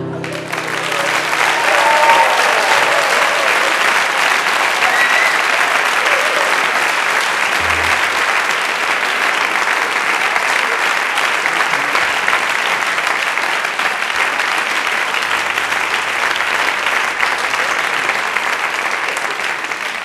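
Sustained applause from a theatre audience after a guitar song ends, with a short voice-like cheer about two seconds in.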